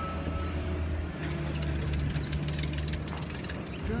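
Construction machinery running steadily with a low engine hum. From about a second and a half in, a rapid metallic clicking and clattering joins it.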